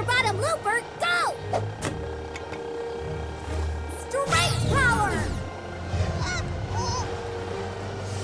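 Cartoon soundtrack: background music with short, high, swooping vocal cries over it, a few near the start and a longer cluster about four seconds in.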